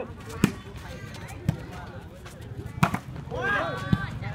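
A volleyball being struck by hand in a rally: four sharp slaps about a second apart, with spectators' voices calling out near the end.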